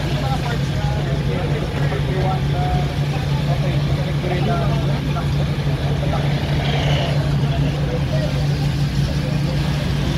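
A steady, low hum of an idling car engine that does not change, with people talking over it.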